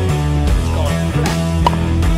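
Rock music with guitar, changing chords, with a brief sharp click near the end.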